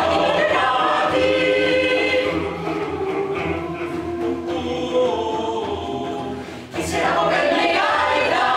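Mixed choir of men and women singing. The singing grows softer through the middle, breaks off briefly near the end, and comes back in full.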